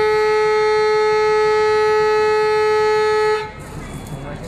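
A vehicle horn held in one long, steady blast that cuts off near the end, leaving street noise.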